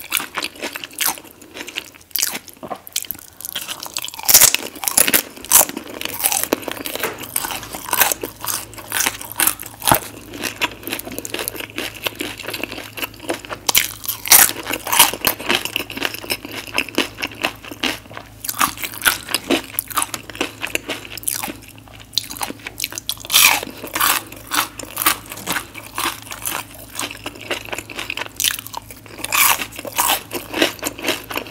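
Close-miked biting, crunching and chewing of loaded nacho tortilla chips, crunch after crunch throughout. A low steady hum comes in about seven seconds in.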